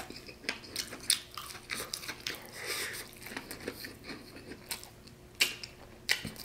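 Close-up chewing of a bite of cornbread waffle dipped in honey butter, with scattered small wet mouth clicks and one louder click near the end.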